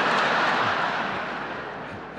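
Large audience laughing and applauding in response to a joke, loudest at the start and slowly dying down.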